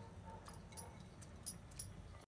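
Faint steady low rumble of a gas burner under a steel pot of water and rice, with two small clicks about one and a half seconds in.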